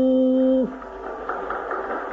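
Carnatic classical vocal music: a long sung note held steady in pitch ends with a short downward slide about half a second in. A quieter layer of string accompaniment carries on after it.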